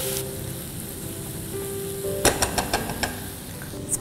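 Squid rings and spice masala sizzling in a nonstick frying pan while a spatula stirs them, with a handful of quick spatula clicks against the pan a little past halfway. Soft background music with held notes runs underneath.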